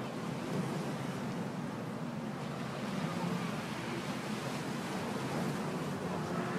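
Steady wash of small waves against shoreline rocks, with some wind on the microphone.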